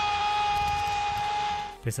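A TV football commentator's long, drawn-out goal cry, held on one pitch and cut off near the end, over the steady noise of a stadium crowd.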